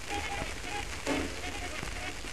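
Hissy, crackling old soundtrack recording, with an indistinct voice in short broken phrases under steady surface noise.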